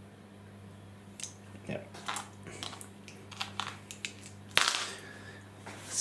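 Small plastic dice clicking and clacking as they are gathered up by hand, in scattered light clicks, with one sharper, louder knock about four and a half seconds in. A steady low hum runs underneath.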